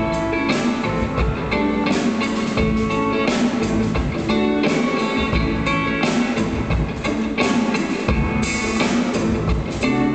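Live rock and roll band playing an instrumental passage: guitar to the fore over a drum kit keeping a steady beat.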